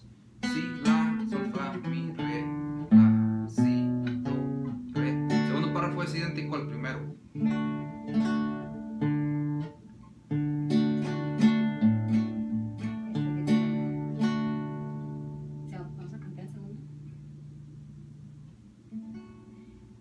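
Acoustic guitar playing a requinto-style ornament on the D chord: quick runs of plucked single notes and short note pairs, a brief break about halfway, then the last notes left ringing and fading over the final few seconds.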